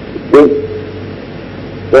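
A single short voiced sound, a person's voice held briefly on one note about a third of a second in, over a steady low hum.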